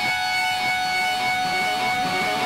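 Electric Telecaster guitar run through a Line 6 Helix with dozens of stacked delays: a single picked note at the start smears into a steady, sustained wash of overlapping repeats that holds one chord-like tone.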